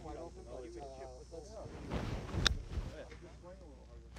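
A Milled Grind 2 wedge strikes a golf ball once, a single crisp click about two and a half seconds in, set inside a brief rush of club-and-turf noise.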